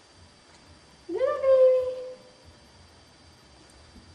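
A cat meowing once: one long call that sweeps up sharply about a second in, then holds and sags slightly before trailing off.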